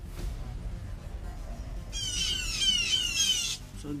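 Background music fading out, then about halfway through a rapid run of bird alarm calls begins, several sharply falling notes a second: a falcon alert, with blue jays the loudest.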